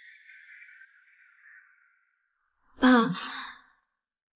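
A woman's short sigh, a breathy voiced exhale about three seconds in that falls in pitch and lasts about a second. Before it, a faint high hiss fades out.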